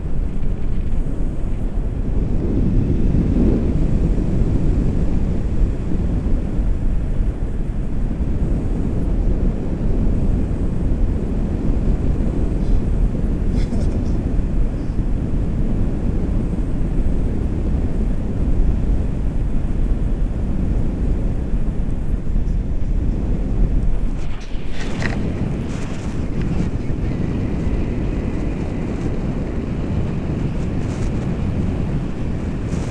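Wind rushing over the camera microphone during a paraglider flight, a steady low rumble; near the end it turns slightly quieter.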